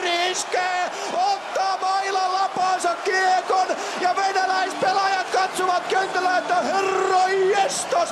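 Ice hockey TV commentator yelling excitedly in Finnish in long, drawn-out shouts over a cheering arena crowd, played back over a hall's loudspeakers.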